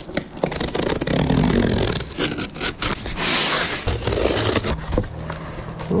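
Packing tape being ripped off a sealed cardboard shipping box and its flaps pulled open: scraping and tearing with cardboard rustle and small knocks, the longest, loudest tear coming a little past the middle.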